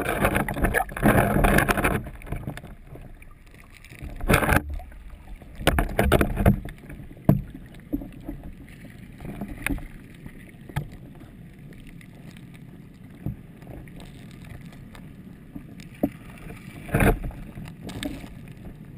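Muffled water turbulence and bubbling heard from a camera submerged in a stream, with loud surges in the first two seconds, a few in the middle and again near the end, and scattered sharp knocks between them.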